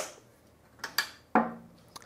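A few sharp clicks and a short pop with a brief low hum as the DigitNOW turntable system's built-in amplifier and speakers switch on, the loudest pop about a second and a third in.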